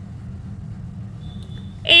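A steady low background hum in a pause between spoken lines, with a voice starting the next line just before the end.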